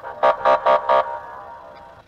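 A police car's siren horn sounding five short, quick blasts, each about a fifth of a second apart, then fading away with a ringing tail.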